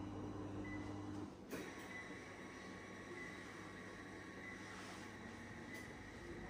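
Panasonic EP-MA103 massage chair at work: a steady motor hum stops a little over a second in, a sharp click follows, and then a fainter, even mechanical whir with a thin high tone continues.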